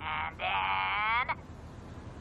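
A voice calling out one long drawn-out word whose pitch bends as it is held, after a short first syllable, lasting about a second, then cutting off to a faint hum.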